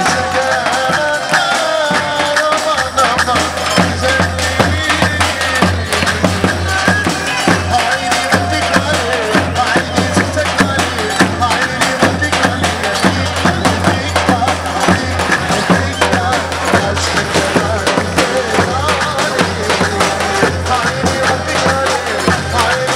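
Turkish folk dance music: a davul drum beaten in a steady, driving rhythm, with a wavering melody played over it.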